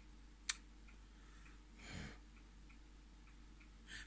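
Quiet room with one sharp click about half a second in, faint soft ticking throughout, and a soft breath near the middle.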